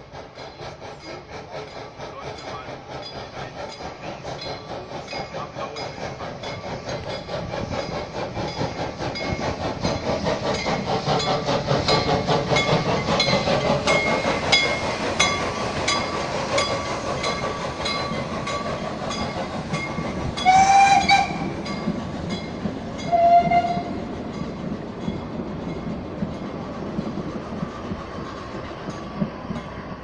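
Narrow-gauge steam locomotives working a train past, their exhaust chuffing in a steady beat that grows louder as they approach. Two short steam-whistle blasts sound about two-thirds of the way through, the first one longer. The coaches then roll by as the chuffing fades.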